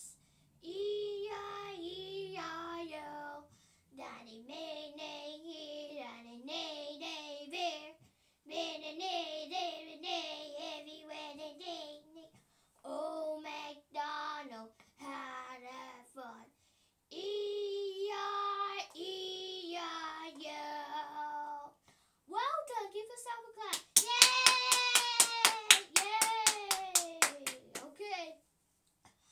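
A young girl singing a children's song unaccompanied, in short phrases with pauses between them. Near the end she claps her hands rapidly, about six claps a second, over a long held note that falls in pitch.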